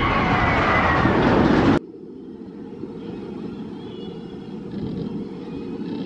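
Bolliger & Mabillard hyper coaster train running along its steel track: a loud rumbling rush with high, wavering tones over it. It cuts off abruptly about two seconds in, and a quieter, muffled rumble follows.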